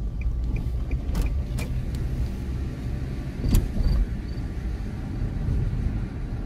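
Road and engine noise inside a moving car: a steady low rumble, broken by a few short knocks, the loudest a thump about three and a half seconds in.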